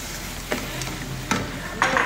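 Chopped onions tipped into a metal pot of seasoned meat and stirred with a plastic spatula over a low, steady sizzle. There are a few short scrapes and knocks of the spatula against the pot, the loudest near the end.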